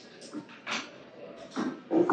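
A few short slurping sips as red wine is tasted from a glass, each a brief noisy burst, spread across two seconds.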